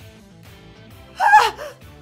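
Soft background music, with a woman's short, high-pitched worried vocal sound, wavering and falling in pitch, about a second and a quarter in.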